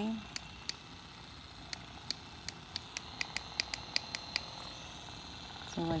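Mini massage gun running with a faint steady motor hum, with a run of short sharp clicks that come scattered at first and then about five a second a little past the middle.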